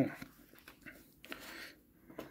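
Pages of a glossy photobook being handled and turned: soft paper rustles and light ticks, with a brief swish a little past halfway.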